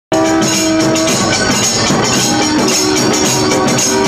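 A band of brass horns and barrel drums playing loudly. A held horn note in the first second gives way to shorter notes over steady drumming.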